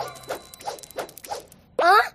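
Cartoon sound effects: a quick run of short swishing strokes, about four a second, then near the end a loud, brief sweep rising in pitch.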